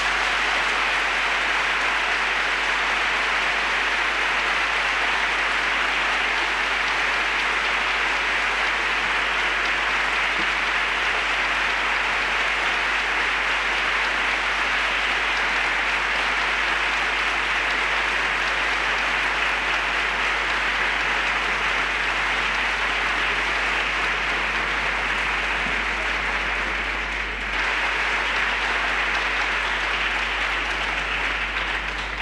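Large concert-hall audience applauding steadily after the piano piece ends, dipping briefly near the end before picking up again.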